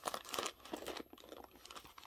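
Rustling and crinkling of a handbag being handled with its zippered top held open, a run of irregular small crackles and clicks that is busiest in the first half second and fainter after.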